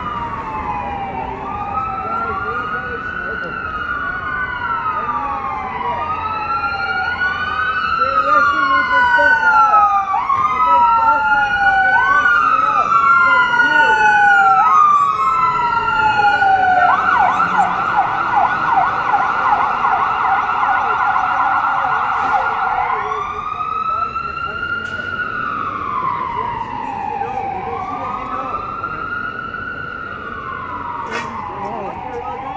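Emergency vehicle sirens, including a fire engine's, wailing in overlapping rising and falling sweeps that grow louder towards the middle. About seventeen seconds in the siren switches to a rapid yelp for several seconds, then returns to the slow wail.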